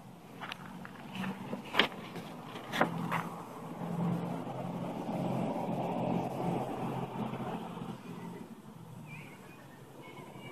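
A road vehicle passing by, its noise swelling and then fading over several seconds. Two sharp clicks come shortly before it.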